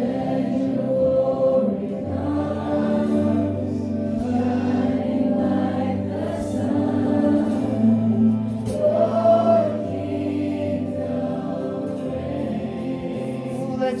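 A live worship band playing, with electric guitar, acoustic guitar and drums with cymbals, under several voices singing together.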